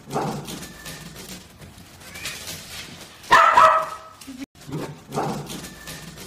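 A dog barking: a few short barks, the loudest about three seconds in.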